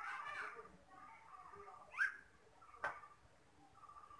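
A single quick, sharp rising chirp about halfway through, followed less than a second later by one sharp click.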